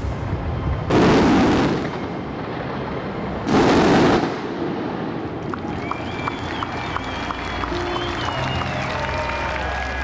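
Fireworks show: two loud shell bursts about one and three and a half seconds in, then lighter crackling as show music comes up.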